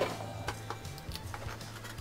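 Soft background music with a steady low note, and a few light taps and clicks from fingertips pressing stickers onto a hard plastic toy playset.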